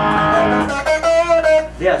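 Electric guitar played through an amp: a held chord, then single sustained notes from about a second in.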